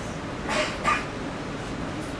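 Two short vocal bursts from a person in the room, close together about half a second in, over steady room noise.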